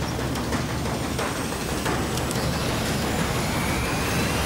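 Trailer sound design: a loud, dense rumble with a few sharp hits scattered through it and a faint rising whine near the end.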